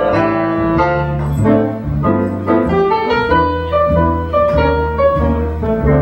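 Jazz piano played on a grand piano, with an upright double bass accompanying underneath, in an instrumental break with no vocals.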